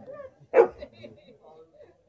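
A dog barks once, a single short, loud bark about half a second in.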